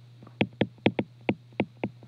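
Stylus tapping and clicking on a tablet screen during handwriting: a quick, uneven series of sharp clicks, about four a second, over a faint steady low hum.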